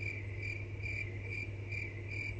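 Cricket chirping in an even rhythm, about three chirps a second, over a low steady hum. It starts as soon as the talking stops and ends just before it resumes: the comic 'crickets' sound effect for an awkward silence.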